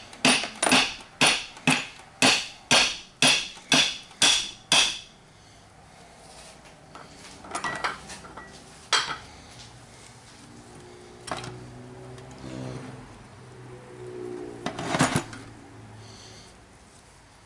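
A hammer striking the cast metal housing of a seized A/C compressor, about ten ringing blows roughly two a second, to drive apart its two sections. After that come a few lighter knocks as the loosened parts are handled.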